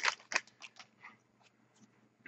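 Trading cards being handled and sorted by hand: a handful of short, faint crisp clicks and rustles in the first second, then nearly nothing.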